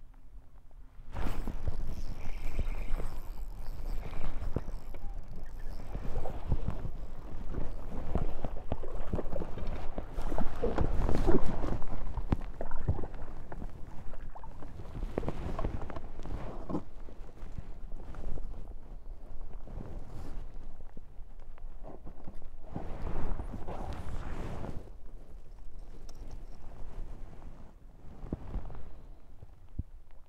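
A dense run of knocks and thumps on a fiberglass bass boat as a bass is landed and handled, heaviest about ten to twelve seconds in.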